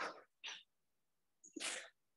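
Three short, sharp hissing exhalations from a kickboxing instructor breathing out forcefully as she throws punches and kicks: one at the start, one about half a second in, and one about a second and a half in.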